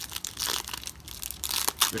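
Foil trading card pack wrapper being torn open and crinkled by hand, a dense run of sharp crackles.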